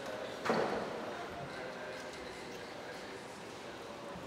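A single brief thump about half a second in, echoing and dying away in a large reverberant church, over faint murmured voices.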